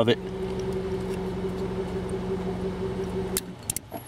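1999 Honda Accord's 2.3-litre four-cylinder engine idling steadily, then cutting out about three and a half seconds in as pressure on the PGM-FI main relay breaks a cracked solder joint and interrupts power. A few sharp clicks come as it dies.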